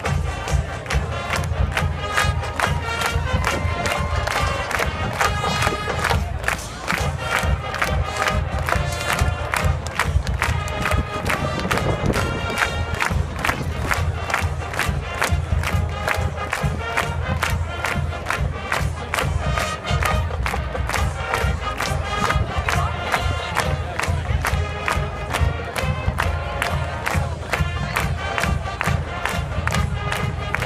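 High school marching band playing: brass melody over a steady drum beat, with crowd noise from the stands mixed in.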